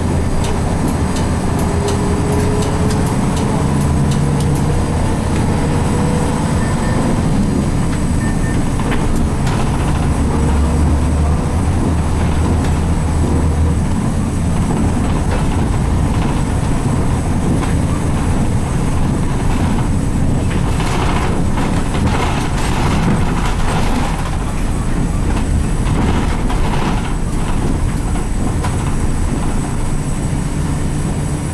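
Interior running sound of a 1995 Nissan Diesel RM route bus, its 6.9-litre FE6 six-cylinder diesel engine pulling with a rising note over the first few seconds, over steady road noise. Rattling comes in from about twenty seconds in.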